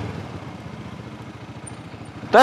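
Motorstar Z200X motorcycle engine running at low revs as the bike rolls slowly, a steady low pulsing under road and wind noise.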